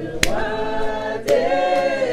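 Voices singing a French gospel chorus unaccompanied, with two hand claps about a second apart.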